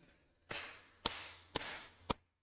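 A man imitating a hi-hat with his mouth: three hissing "tss" sounds about half a second apart, marking the beat.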